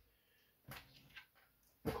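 Faint clicks of small plastic action-figure accessories being picked up off a wooden shelf, a short sharp one followed by a few fainter ones, and then a word at the very end.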